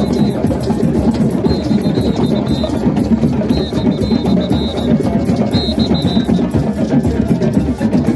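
A drum circle of many hand drums playing together in a dense, steady rhythm, with a short high ringing tone recurring every couple of seconds.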